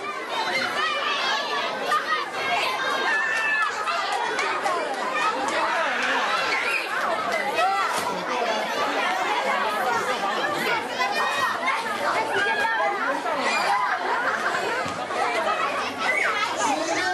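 A crowd of children chattering and shouting at once during a running game, many voices overlapping without a break.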